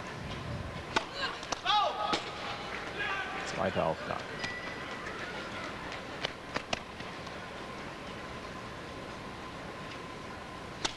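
Tennis ball struck by racquets during a point on an indoor court: a handful of sharp hits, the first two about a second apart early on and a quick cluster of three a little past halfway. Short voice calls ring out among the early hits.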